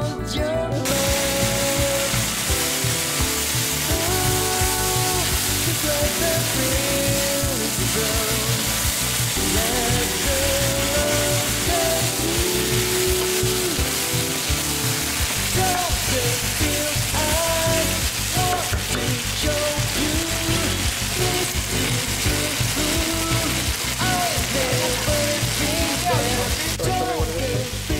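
Chicken pieces and green peppers sizzling in hot oil in a nonstick wok, starting about a second in and going on steadily while being stir-fried with a wooden spatula. Background music plays throughout.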